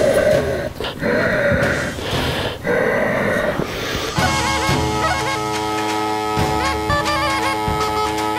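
A Hutsul duda, a bagpipe with a goat-skin bag, being blown up and started: three breathy puffs rush through the blowpipe as the bag fills, then about four seconds in the pipes sound, a steady drone under a chanter melody stepping between notes.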